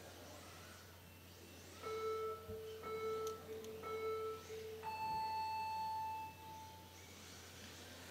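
Faint electronic start-countdown beeps: three short, low beeps about a second apart, then one longer, higher-pitched beep that signals the start.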